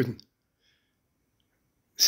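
A man's voice ending a word, then a pause of near silence in a small room broken by a faint click.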